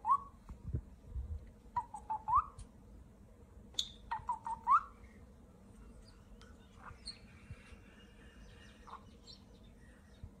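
White-bellied caique whistling: three short phrases in the first five seconds, each a few level notes ending in a rising whistle. After that only a few faint, softer calls.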